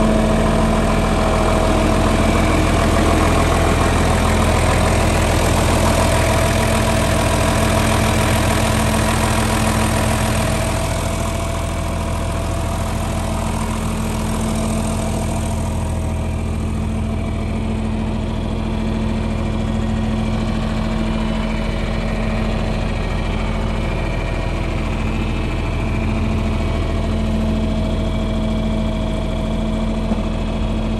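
A John Deere farm tractor's engine idling steadily. It sounds a little softer after about twelve seconds.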